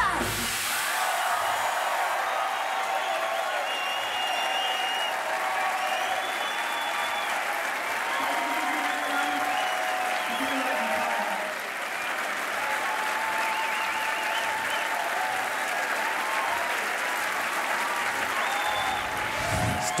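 Large audience applauding steadily, with voices cheering and whooping through it.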